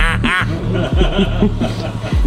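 A man laughing loudly, a quick run of 'ha' sounds near the start, over background music with a deep, steady beat.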